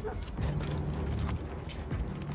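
Scattered light clicks and ticks over a steady low hum.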